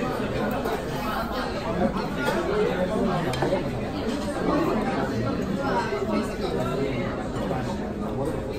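Restaurant dining-room chatter: many voices talking over one another, with a few faint clinks of tableware.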